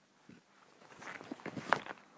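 Vinyl LP cardboard sleeves being handled: a few soft knocks and rustles as one record jacket is set aside and the next is picked up, the loudest knock about three-quarters of the way through.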